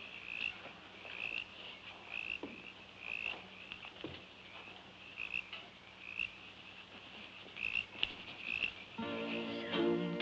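Night ambience of a small animal chirping, one short high chirp roughly every second, with a few soft rustles. Music comes in near the end.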